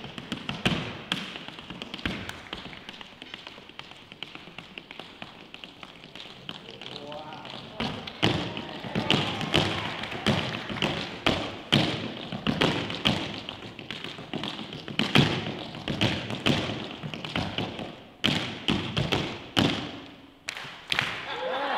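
Metal-plated tap shoes striking a hard dance floor in an unaccompanied tap solo: soft, quick taps for the first several seconds, then louder, sharper strikes from about eight seconds in.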